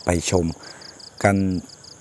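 A cricket chirping in an even, fast pulse train, about seven high-pitched pulses a second.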